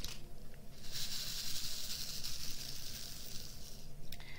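Crystal diamond-painting drills spilling from a bag into a plastic drill tray and rattling in it: a steady, high, hiss-like rattle that starts about a second in and stops just before the end.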